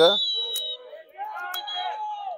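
Referee's whistle blown: a long, high blast, then a shorter one about a second and a half in, stopping play with a player down on the pitch.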